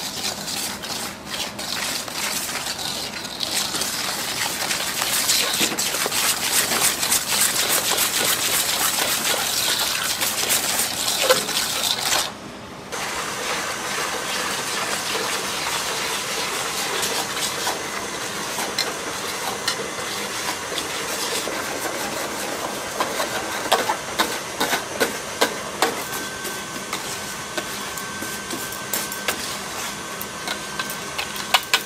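Wire whisk beating an egg and flour batter in a large stainless steel bowl, the wires rattling fast against the metal. Partway through, hot liquid is poured in while the whisking goes on.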